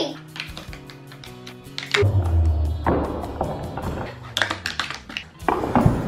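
Background music with a few light plastic clicks and taps from a Playmobil toy tree being worked by hand, and a sharper knock near the end as the tree's top comes off.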